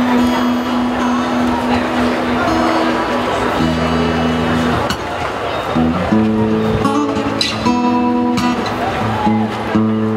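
Acoustic guitar being strummed, with held chords that change every second or two.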